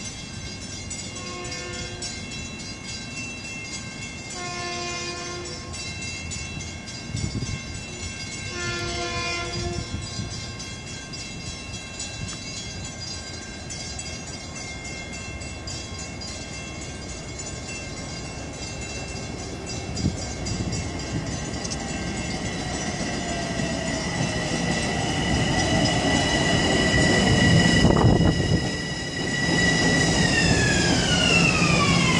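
Long Island Rail Road train sounding its horn a few times as it approaches, then its rumble and wheel noise growing louder as it pulls in alongside the platform. Near the end a falling motor whine can be heard as the train slows.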